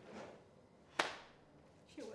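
A single sharp crack, like a slap or a clap, about halfway through, with a short ringing tail.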